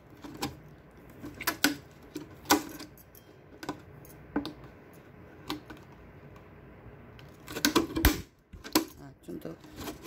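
Thin clear plastic PET bottle crackling and snapping as it is handled and cut. Separate sharp clicks come every second or so, with a quick cluster about three-quarters of the way through.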